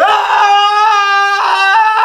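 A young man's loud, sustained yell, one long shout held at a high, steady pitch.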